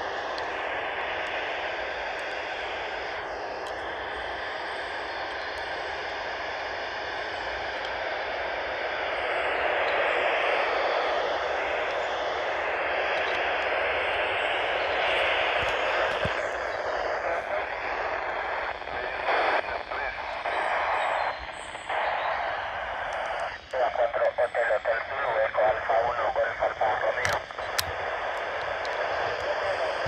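Yaesu FT-470 handheld receiving the AO-91 amateur satellite's FM downlink: steady radio hiss with weak, noisy voices of other amateur stations coming through. In the second half the signal turns choppy, cutting in and out rapidly as it fades in and out.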